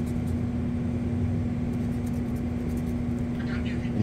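Scratch-off lottery ticket being scraped with a hard-edged tool, a faint scratching over a steady low hum with one constant tone.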